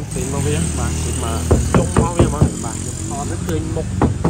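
A man's voice speaking through most of the stretch, over a low steady hum.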